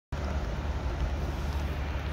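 Steady low rumble with a faint hiss over it: outdoor background noise.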